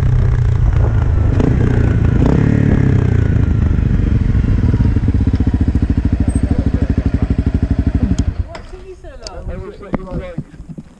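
Honda CRF250L single-cylinder engine running with wind rush as the bike slows to a stop, then idling with an even thump of about eleven beats a second before it cuts out about eight seconds in. Voices follow near the end.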